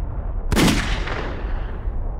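Gunshot sound effect: one sharp shot about half a second in that rings out and fades over about a second and a half, over a steady low rumble.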